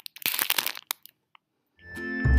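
Handling noise of the recording device being grabbed and moved: a flurry of crackly rubbing and knocks, then quiet, with music fading in right at the end.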